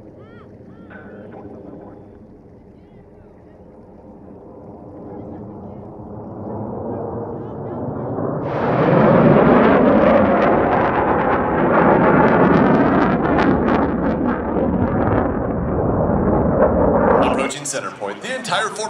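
Jet engine noise from Blue Angels F/A-18 Super Hornets, with their twin turbofans. It is faint and distant at first and builds steadily. About halfway through it becomes a loud, rushing roar as a jet comes low and close, then cuts off suddenly near the end.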